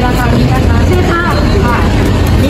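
A girl talking in Thai over a steady low rumble that does not let up.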